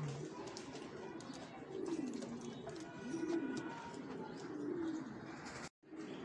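Domestic fancy pigeons cooing: a series of about four low, rising-and-falling coo phrases, each roughly a second or more apart. The sound drops out for a moment near the end.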